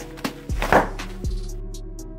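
Background music with a steady beat and sustained tones.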